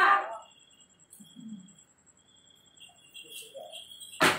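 A voice trailing off at the start, then a quiet room with two faint, brief murmurs of voices and a thin, steady high-pitched tone.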